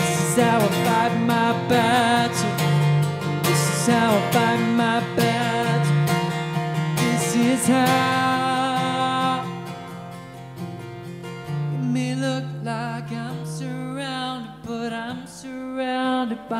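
A man singing a slow worship song while strumming an acoustic guitar. The playing and singing drop to a softer level about ten seconds in.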